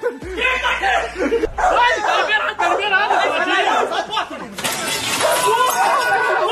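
Excited voices and laughter. About four and a half seconds in, a harsh, noisy burst joins them and carries on to the end.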